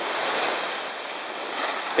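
Small waves washing onto a sandy beach: a steady rush of surf that eases a little mid-way and builds again near the end.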